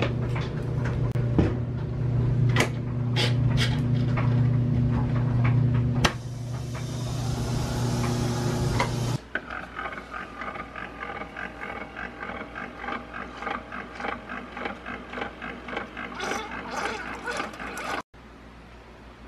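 Top-loading washing machine running: a steady low motor hum with scattered clicks, then a few seconds of rushing hiss. After a sudden drop in level, a single-serve coffee maker brews into a mug with a quieter rhythmic pulsing, about two pulses a second.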